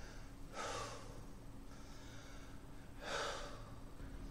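A man breathing hard to recover from a set of sit-ups: two heavy breaths, about two and a half seconds apart, with a fainter one between.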